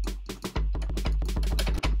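Hip-hop drum-kit samples played live from keys: a long, deep kick booming underneath a rapid run of short, sharp percussion hits.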